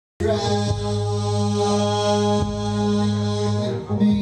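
Droning chant-like music: a sustained low drone with a steady stack of overtones, unbroken apart from a brief dip just before the end.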